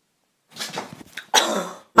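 Coughing: a short run of rough, hacking coughs starting about half a second in, with the loudest coming near the end and trailing off lower in pitch.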